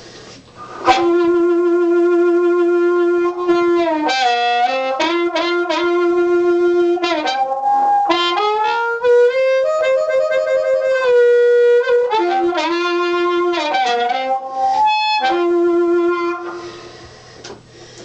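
Amplified blues harmonica played through a 1940s Shure Brown Bullet harp microphone (model 9822A, CR element) with a Fab Echo delay on it. Long held notes with bends and quick phrases start about a second in, and the last held note trails off in echo near the end.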